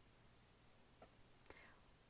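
Near silence: a pause in a spoken narration, with only faint hiss and two small faint clicks.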